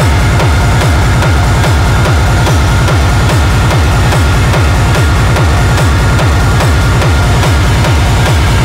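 Techno track: a loud, steady kick drum about twice a second under a dense, noisy upper layer.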